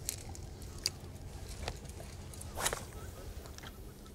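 Light handling sounds of spinning rods and reels being worked: a few faint clicks and one brief swish about two and a half seconds in, over a low steady rumble.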